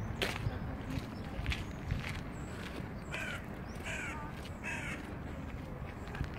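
A bird calling three times in quick succession about halfway through, each call short and harsh, over steady low outdoor background noise.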